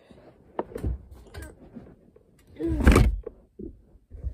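A door being pushed shut: light knocks and handling noise, then a louder thump with a short creak about three seconds in.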